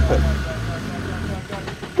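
Land Rover Defender 110 Td5 five-cylinder turbodiesel engine pulling under load as the truck crawls up a rock ledge. It is a low, steady drone that drops away about a second and a half in.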